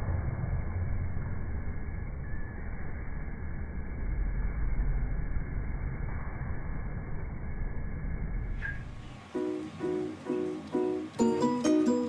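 A steady, dull low noise, then plucked-string background music starting about nine seconds in, with short ringing notes in an even rhythm.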